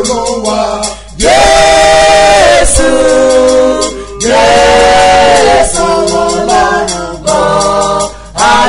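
Unaccompanied gospel singing: sung phrases separated by short breaths, with long held notes about a second in and again about four seconds in.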